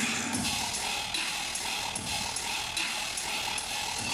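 Dubstep played loud over a festival sound system, heard through a phone's microphone: a gritty, dense mix driven by sharp hits about twice a second.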